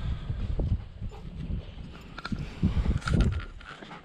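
Wind rumbling on the microphone and footsteps on wet, muddy ground, with a few light clicks in the second half.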